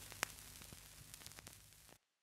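Near silence: a faint hiss with a few tiny clicks, one a little stronger about a quarter of a second in.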